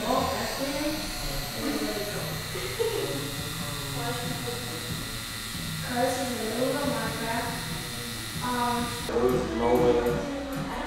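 Electric pen-style tattoo machine running with a steady buzz as it lines a tattoo into skin, under low voices.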